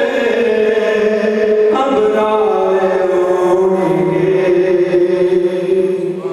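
A man's voice chanting unaccompanied into a microphone, a devotional recitation sung in long, drawn-out notes that bend slowly in pitch. A new phrase begins a little under two seconds in.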